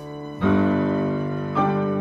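Viola and piano duo playing slow classical music: two piano chords struck about a second apart, each ringing on over the viola's sustained bowed notes.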